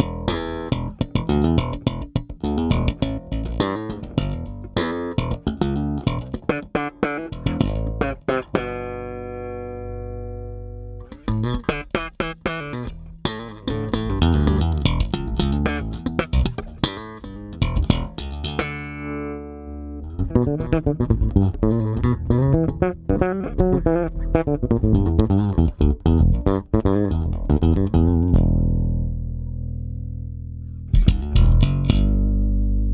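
A Music Man StingRay electric bass, with a single humbucker and an active three-band EQ set flat, played through a bass amp: a riff of quick plucked notes with a bright, trebly tone. Now and then a held note is left to ring, about nine seconds in, near twenty seconds, and again near the end.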